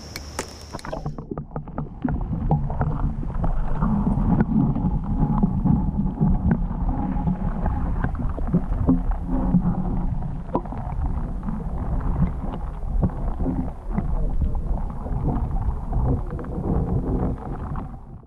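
Muffled water noise picked up by an underwater camera: a low rumble and slosh with many small clicks and knocks, the higher sounds cut away.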